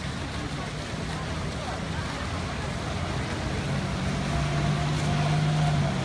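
Traffic noise: a steady low engine hum that grows louder over the last two seconds, with a faint higher tone alongside, over a general wash of outdoor noise.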